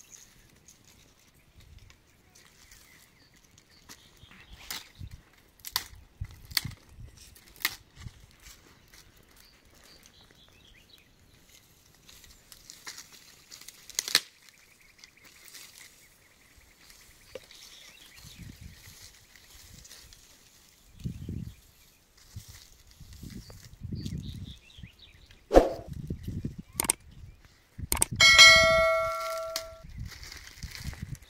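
Scattered sharp snaps and cracks of dry sticks being broken and fed to a small wood fire, with a few dull thuds. Near the end comes a click and then a ringing bell-like chime lasting about a second and a half.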